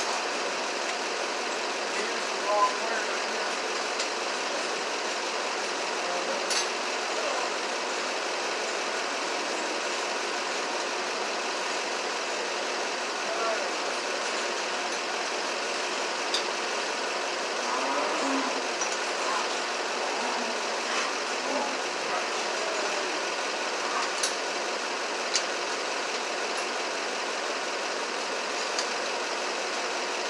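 A steady mechanical drone at an even level, with a few faint hum tones in it, broken by occasional light clicks and knocks.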